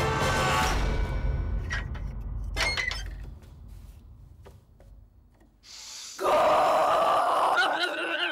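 Film trailer soundtrack: music that breaks off about a second in, a few sharp clinks, a nearly quiet stretch, then a sudden loud burst of excited shouting about six seconds in that turns to laughter near the end.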